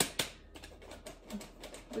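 Metal hand-crank flour sifter clicking as it is handled and worked over a bowl: two sharp clicks at the start, then lighter irregular ones.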